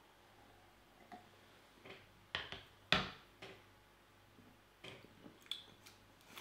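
Beer being sipped and swallowed from glasses: a few short, soft sounds with quiet between, the clearest about three seconds in.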